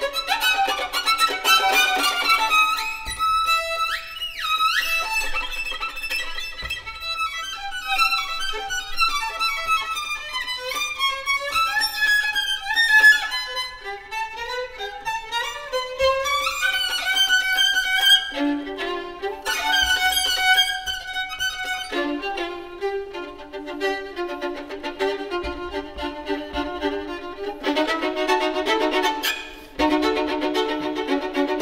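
Solo violin playing a fast, virtuosic bluegrass-style fiddle passage of rapid runs, double stops and high notes, with quick upward slides about four seconds in. In the last part the violin settles into repeated lower double-stop chords in a steady rhythm, meant to sound "like an accordion".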